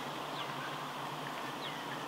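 Quiet bush background with a steady low hum and a few faint, brief, falling chirps from birds.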